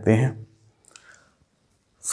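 A man's voice ends a word, followed by a quiet pause broken by a couple of faint clicks about a second in, as a whiteboard marker is readied for writing.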